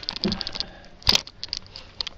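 Handling noise: a quick run of light clicks and knocks, with one louder knock about a second in, as the heavy subwoofer and camera are handled.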